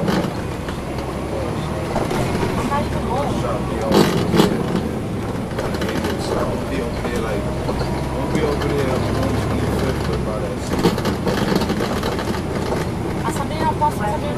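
Cummins ISL9 diesel of a NABI 40-SFW transit bus heard from inside the passenger cabin, a steady low drone as the bus drives, with a passenger's talk over it. Its note shifts about ten seconds in, and two sharp knocks come about four seconds in.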